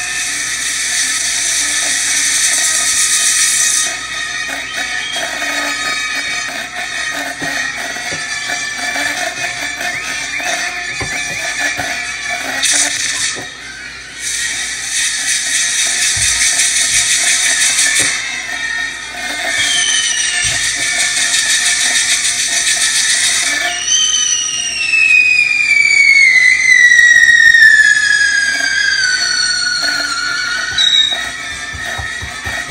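A castillo fireworks tower burning: its spark fountains hiss in stretches of a few seconds, with short breaks between them. Over the last six seconds a whistling firework slides steadily down in pitch. Music plays along with it.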